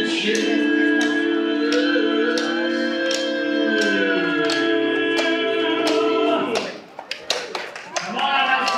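Male barbershop quartet singing a cappella, holding a long close-harmony chord that shifts and swells, then cuts off about six and a half seconds in. A horse's hooves clop steadily on the pavement underneath.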